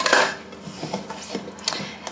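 Light kitchen handling sounds: a short noisy rustle right at the start, then a few soft knocks against utensils or a bowl.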